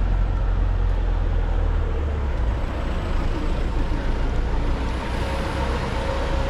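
Busy road traffic with a red double-decker bus running close by: a deep rumble for the first two seconds, then a steady whine that comes in near the end.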